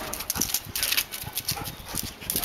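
Yellow Labrador's paws and claws scrabbling on a concrete floor as it lunges and play-bows at a cat: quick, irregular scrapes and taps.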